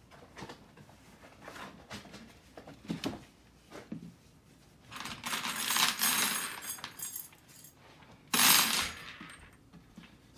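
Small metal wire hooks clinking and scraping against a wooden shoe-rack frame as they are fitted into its holes: a few light clicks, then two bursts of scraping about five and eight seconds in, the second shorter and louder.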